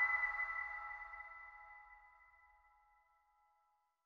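The last chime of ambient intro music ringing out: a cluster of steady bell-like tones fading away until it dies out about two and a half seconds in.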